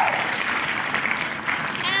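Recorded applause with crowd cheering, played as a sound effect by an online name-picker wheel to announce a winner.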